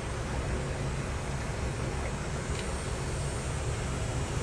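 Steady low outdoor rumble with no distinct events, while the flag folding itself makes no clear sound.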